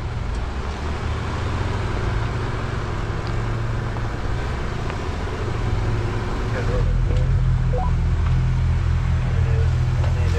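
Jeep Gladiator Rubicon's engine running at trail-crawling speed, a steady low drone that grows louder about seven seconds in.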